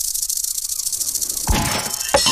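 Slot-game reel-spin sound effect: a fast, high-pitched rattle while the reels spin, with a thud about one and a half seconds in as a reel lands.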